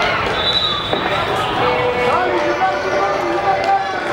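Several voices of players and spectators calling and shouting over one another in a large indoor sports hall, with no clear words.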